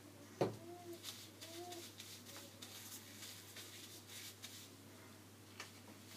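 Quiet handling noises of gloved hands working hair dye through wet hair: soft rustling with a sharp click about half a second in and a smaller one near the end.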